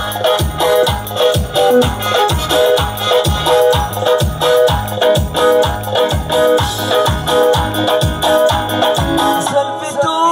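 Electronic keyboard music played live: a steady programmed drum beat of about three low kicks a second under a short keyboard figure repeated over and over. Singing comes in right at the end.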